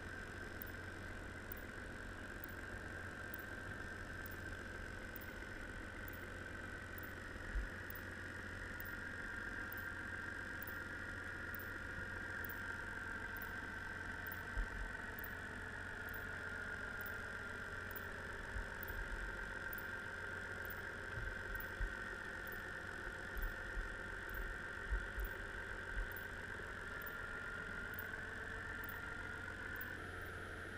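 Underwater sound of a boat's engine running steadily, a constant drone whose pitch drifts slowly, with several short dull thumps in the second half.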